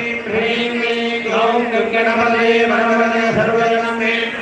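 Priests chanting Sanskrit homam mantras, a steady recitation with long held notes.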